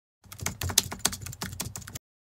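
Rapid clicks of computer-keyboard typing, a sound effect that starts a moment in and cuts off abruptly.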